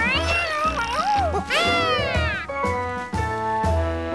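A cartoon animal character gives two high-pitched cries over background music: a short one at the start and a longer one about one and a half seconds in that rises and then falls in pitch. The music then settles into held notes.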